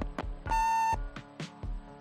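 A single steady electronic beep, about half a second long, from an answering-machine tape at the end of one caller's message, over background music with a steady drum beat.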